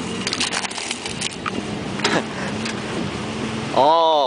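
An SUV driving off-road over rutted sand, heard from inside the cabin: the engine hums steadily under road noise, with several short knocks and rattles as it goes over bumps. Near the end a person's loud shout rises and then falls in pitch.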